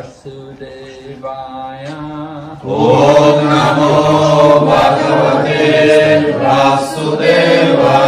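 Devotional call-and-response chanting: a single voice leads quietly, then a little under three seconds in a group of voices answers much louder and carries on.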